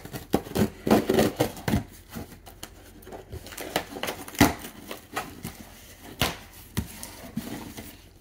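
A cardboard shipping box being opened with scissors: scraping, crinkling and a run of sharp clicks and knocks, the loudest about four and a half seconds in.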